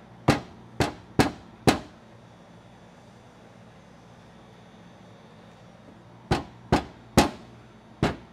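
Impact wall anchors being knocked into drilled holes in the wall: four sharp knocks about half a second apart near the start, then three more near the end.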